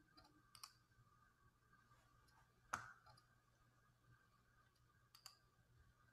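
Three faint, sharp clicks, the loudest about three seconds in, over near-silent room tone with a faint steady hum.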